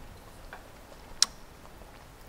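A single short click of cutlery against a plate, about a second in, over quiet room tone.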